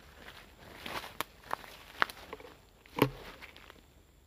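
Footsteps crunching on dry grass and leaf litter: a few irregular steps, with a louder thump about three seconds in.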